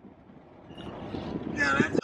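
Car cabin noise from driving, faint at first and growing louder about two-thirds of a second in, with a short vocal sound from a person near the end.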